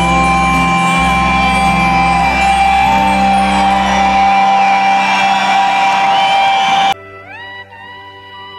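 Amplified live band music with acoustic guitar and bass guitar; the low bass stops about halfway through. About a second before the end it cuts off suddenly to quieter music with rising gliding tones.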